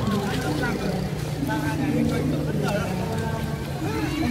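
Several people talking in the background over the steady low hum of a vehicle engine running.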